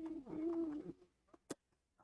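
A short, low, steady-pitched vocal sound lasting under a second, followed about one and a half seconds in by a single sharp computer mouse click.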